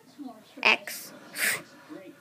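Two short, sharp swishing sound effects made with the mouth, about three-quarters of a second apart, imitating a blade slicing through fruit.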